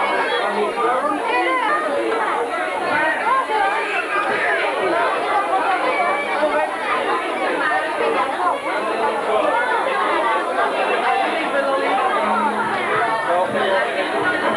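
A crowd of children and adults chattering: many voices talk over one another without a break, steady and loud.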